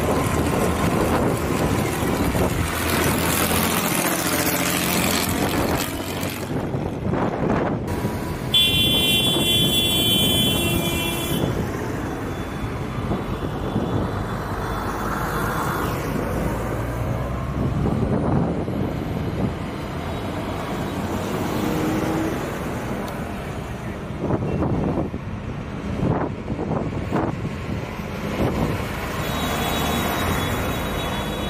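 Diesel farm tractors driving past, their engines running steadily. A horn sounds for about three seconds, a third of the way in.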